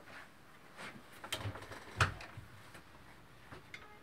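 A few faint knocks and clicks in a quiet room, with one louder thump about two seconds in.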